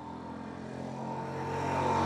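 Steady motor-vehicle engine hum that grows gradually louder over about two seconds, holding an even pitch.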